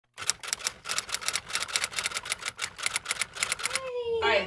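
Typewriter typing sound effect: a fast run of sharp key clicks, about seven a second, ending near the end as a rising tone comes in.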